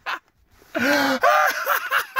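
A man laughing hard. After a brief pause, a long gasping whoop comes about a second in, then a quick run of laughing bursts.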